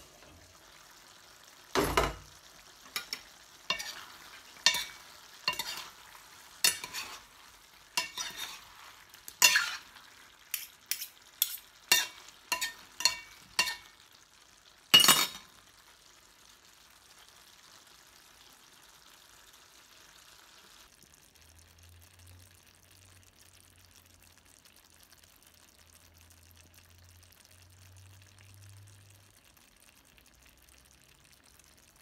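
A cooking spoon stirring vegetables in a stainless steel pot, knocking and scraping against the metal in about a dozen sharp clinks, the loudest about two seconds in and near fifteen seconds. A steady sizzle of the simmering food runs under them and stops about twenty seconds in, leaving only a faint low hum.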